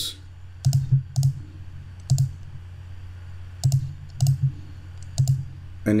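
Computer mouse button clicks, about eight short sharp ones at uneven intervals, some in quick pairs, as fill colours are picked from a menu, over a steady low hum.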